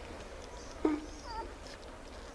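Newborn puppies squeaking while nursing: one short squeal a little under a second in, then a few small high squeaks.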